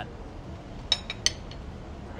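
Light clinks of dishware on a countertop: two sharp, ringing clinks with a fainter one between, about a second in, as a plated dish is set down.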